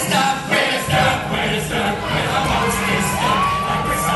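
Audience cheering and shouting over the show's accompaniment music. Near the end a single high tone rises, holds for about a second and stops.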